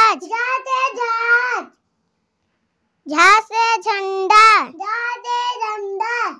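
A child chanting Hindi alphabet lines (a letter, then a word that starts with it) in a sing-song voice: one phrase, a silence of about a second, then another phrase.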